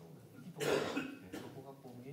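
A person coughs once, a short harsh burst about half a second in, over faint speech in the room.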